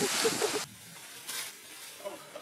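A burst of rustling noise that cuts off abruptly about two-thirds of a second in, followed by a brief, fainter rustle.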